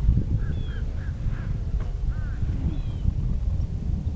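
Wind rumbling on the microphone, with a bird calling a quick run of four short notes about a second in and a few fainter calls later.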